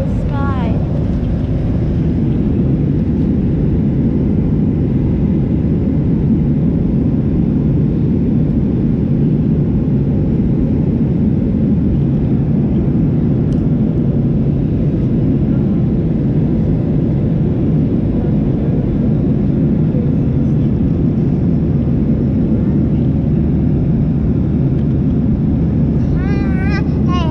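Steady low roar inside a jet airliner's cabin at cruise: engine and airflow noise, even and unchanging throughout.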